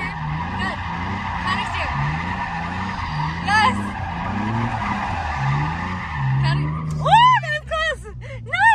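Nissan 350Z's V6 engine revving up and down while the car slides through a drift, with its tyres screeching steadily on the pavement, heard from inside the cabin. Near the end there are a few sharp rising-and-falling squeals.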